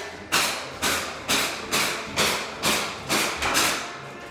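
Hammer blows struck in a steady rhythm, about two a second, eight in a row, each ringing out briefly in an echoing room.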